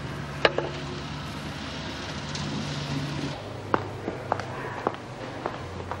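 A steady low hum under background noise, with one sharp knock near the start; about halfway through the hum changes and footsteps on a hard floor follow, about one every half second.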